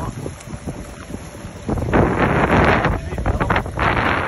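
Gusts of wind buffeting the microphone over the rush of muddy floodwater, with the longest, loudest gust about two to three seconds in.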